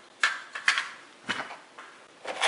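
Three light plastic clicks, about half a second apart, as a small plastic fuse case and inline fuse holder are set back among crimp connectors in a plastic parts organizer.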